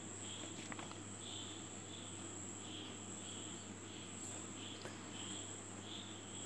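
Faint insect chirping: soft chirps repeating about twice a second over a steady high-pitched trill, with a low steady hum underneath.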